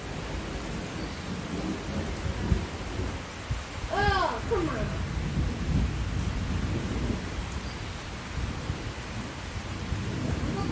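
Rain falling, with a low uneven rumble throughout. A short pitched call rises and falls about four seconds in.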